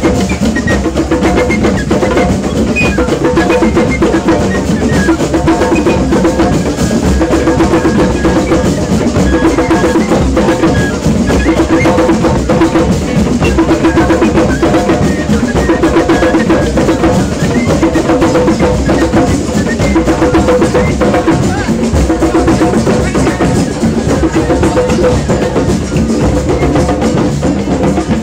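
A drum circle's hand drums playing a fast, steady rhythm together. A wooden flute plays held notes over the drumming.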